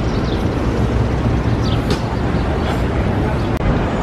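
Steady city street noise: a low traffic rumble with the general hubbub of passers-by on a busy sidewalk.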